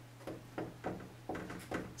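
Dry-erase marker writing on a whiteboard: a series of short, faint scratchy strokes as the word "steel" is written out, over a steady low hum.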